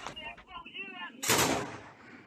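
A single loud gunshot about a second and a quarter in, its report dying away over half a second, after a sharp crack at the start. A man's voice calls out between the two.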